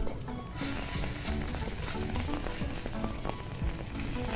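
Garlic paste, ginger and chopped green chillies sizzling in hot fat in a nonstick frying pan. The sizzle starts suddenly about half a second in and then runs steadily.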